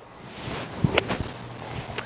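Golf iron swung down and striking the ball and turf: one sharp crack of impact about a second in, with a faint swish just before it.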